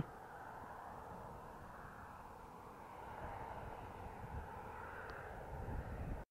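Faint outdoor ambience: a steady low rushing drone with no distinct events, swelling slightly in the second half.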